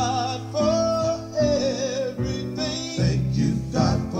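Recorded gospel song playing: a singer holding long, wavering notes over guitar accompaniment.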